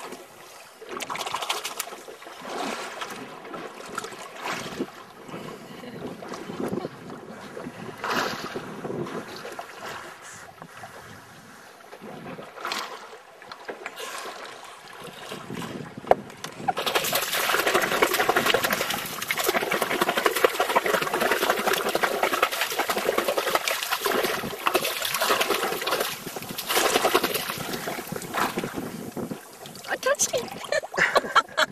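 Sea water splashing and lapping against the side of a boat, with scattered small splashes. From about 17 seconds in, a louder, steady rushing noise takes over.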